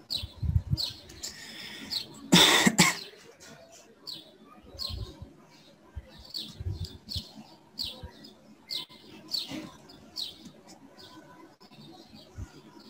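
A small bird chirps repeatedly, with short, high chirps coming about once a second. A loud cough about two seconds in is the loudest sound.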